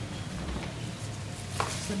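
Soft footsteps on a hard floor: a few light taps over a steady low hum.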